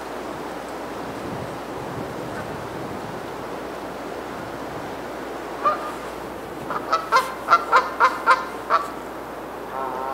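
A run of about ten short bird calls in quick succession, a few per second, starting about halfway through, with one more near the end, over a steady background hiss.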